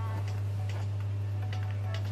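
Steady low electrical hum with faint ticks over it.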